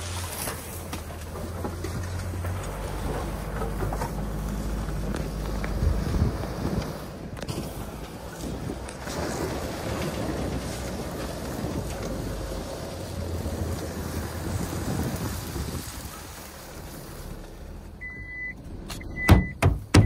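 Four-wheel-drive ute engine running at low speed, its pitch shifting a few times, with wind and road noise. Near the end come three short high beeps and a couple of loud thumps.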